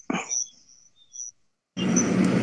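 Video-call audio: the tail of a spoken word over faint high-pitched chirping, then the line drops to dead silence. Near the end another participant's microphone opens with a steady hiss and low hum.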